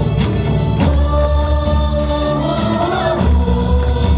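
Live gospel praise-and-worship song: a man singing through a microphone with other voices joining in, over a band backing with heavy bass and regular percussion hits.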